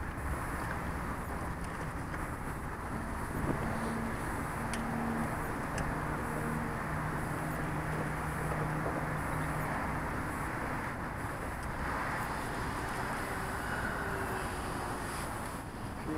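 Electric RC biplane, a Hacker A50 motor turning a 17x10 propeller, flying overhead: a steady propeller drone over even background noise. A low hum is strongest for several seconds in the middle.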